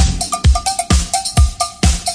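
Electronic dance music from a DJ mix: a vocal track cuts off right at the start and a sparse drum-machine beat takes over, a deep kick about twice a second with short, high two-note percussion hits in between.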